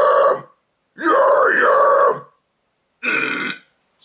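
A man's low, raspy death-metal scream on the practice syllables "ya-yam", using the chest compression technique: the tongue is raised flat against the hard palate so the air comes out compressed and the scream sounds dense and grunty rather than hollow. One scream ends about half a second in, a second runs for just over a second, and a shorter third follows near the end.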